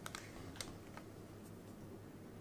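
A few light clicks and taps in the first second as the paper milk-carton cake mold is handled on the table, over a faint steady low hum.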